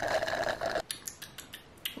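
A sip of iced coffee sucked up through a straw: a short slurp lasting under a second, followed by a few light clicks.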